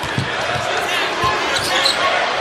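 A basketball dribbled on a hardwood court, a few low bounces over a steady murmur of arena crowd noise.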